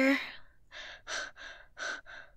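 A woman's voice: about five short, breathy breaths in quick succession, starting just under a second in, after the end of a spoken word.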